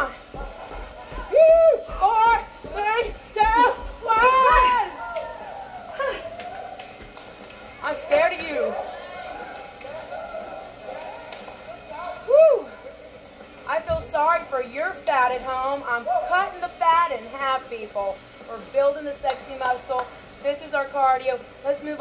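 Voices, with music playing behind them, and an evenly repeating low thud in the first few seconds.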